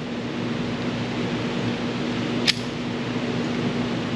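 Steady hum of an indoor shooting range's ventilation, with one sharp click about two and a half seconds in.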